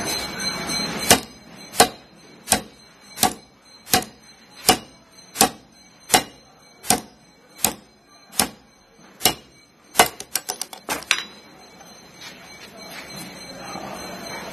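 Modified-nylon tactical belt clip snapped open and shut by hand over and over in a spring test: about a dozen sharp clicks, one every 0.7 s or so, then a quick run of lighter clicks before it stops.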